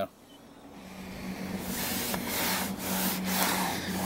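Rubbing strokes of cleaner being wiped over a perforated vinyl door panel. The rubbing builds from about a second in, over a steady low hum.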